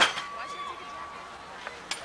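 Metal BMX starting gate dropping onto the ramp with a single loud clang, followed by a steady beep for about half a second. A faint click comes near the end.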